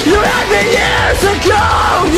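A man singing in a loud, yelling voice over a metalcore backing track. His pitch slides up and down, and the voice turns rough and raspy near the end.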